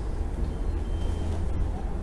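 Steady low rumble of room noise in a lecture hall, with no clear events.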